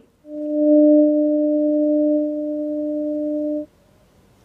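A loud, steady electronic tone at one low pitch, starting just after the cut and held for about three and a half seconds before it cuts off suddenly, leaving faint hiss.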